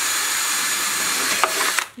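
Ryobi cordless drill running at steady speed as its twist bit bores through a thin plastic casting mold, stopping near the end.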